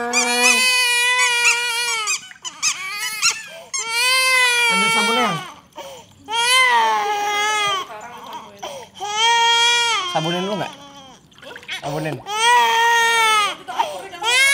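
Infant crying hard: about five long wails, each a second or two, with short breaths between.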